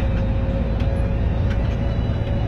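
Moving coach's engine and road noise heard from inside the cab: a steady low drone with a faint steady whine above it.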